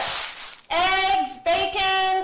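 Children's voices singing, a note falling away at the start, then two long held notes, each under a second, with short breaks between them.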